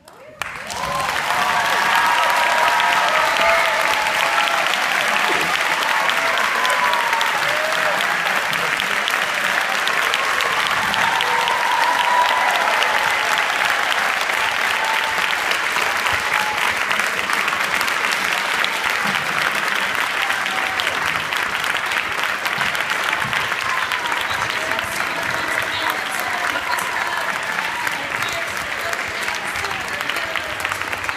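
Concert hall audience applauding and cheering after a performance, starting suddenly about half a second in and going on steadily, with whoops and shouting voices over the clapping.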